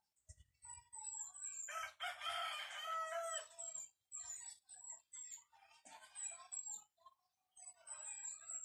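A rooster crows, one long call starting about two seconds in, with shorter calls later, over repeated high, brief chirps of small birds.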